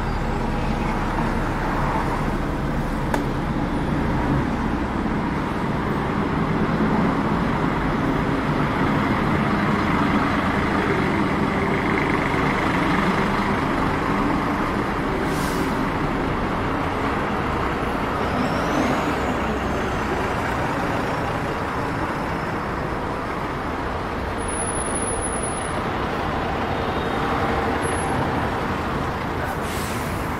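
Street traffic: buses, coaches and cars idling and passing in a steady wash of engine and road noise, with a brief high whine a little past halfway.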